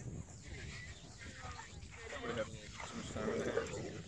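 Irish Wolfhound pups vocalising as they play-fight and chase, loudest a little after halfway, over a steady low rumble of wind on the microphone.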